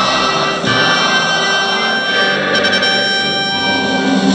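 Military brass band playing long held chords, the harmony shifting twice.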